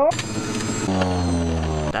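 Electric juicer grinding kale pushed down its chute: a harsh shredding noise for about the first second, then a motor hum that slowly drops in pitch as the leaves load it, cutting off just before the end.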